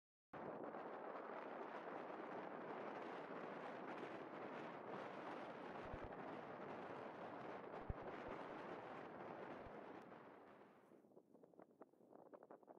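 Faint steady wind noise, with a few brief low thumps of wind buffeting the microphone. It fades out near the end, leaving faint irregular rustles.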